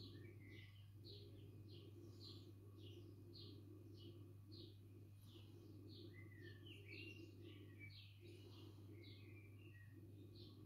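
Faint bird chirping, short chirps repeated about twice a second with a few sliding calls between, over a low steady hum.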